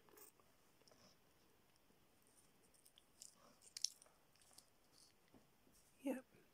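Mostly near silence with faint handling noise and a few small plastic clicks around three to four seconds in, as a large clip-on ferrite core is fitted loosely around a mains cable.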